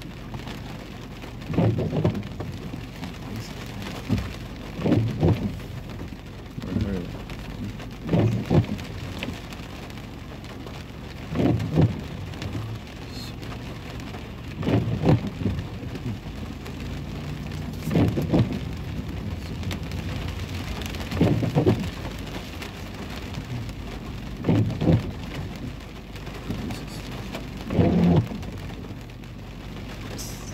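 Rain pattering steadily on a car's windshield and roof, heard from inside the cabin. The windshield wipers sweep about every three seconds, each sweep a pair of low thumps.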